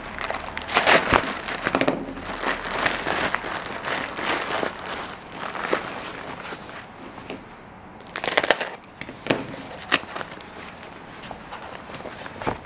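Plastic mailing bag and foam packing wrap crinkling and rustling in irregular bursts as a parcel is opened and its contents unwrapped by hand.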